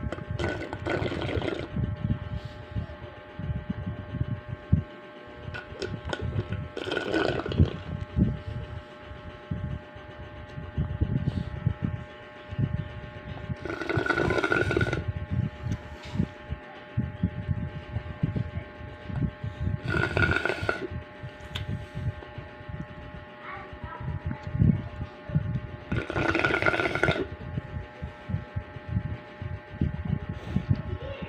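A person slurping sips of a drink from a plastic cup: five sips of about a second each, roughly six seconds apart, with handling and mouth noises between them.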